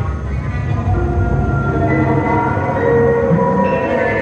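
Contemporary chamber ensemble with electronic tape playing a dense, dark texture: many held tones layered over a low rumble, growing a little louder about a second in.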